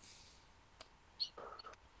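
Quiet pause between speakers with a faint hiss at first, a single sharp click a little under a second in, and a brief, faint vocal sound near the end.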